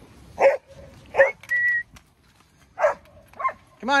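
A dog giving a string of short, high-pitched barks and whines, about five calls with pauses between them, one of them a held high note.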